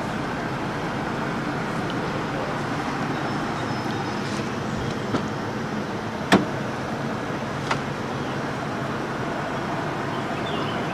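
Driver's door of a 1996 Buick Roadmaster wagon being opened: a sharp latch click a little past six seconds in, with a lighter click about a second before and another about a second and a half after, over a steady background rush.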